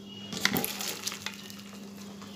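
Boiled banana flower and potato pieces with their cooking water poured from a pot into a plastic colander. Water splashes and food patters starting about half a second in, with a few clicks and knocks as it drains.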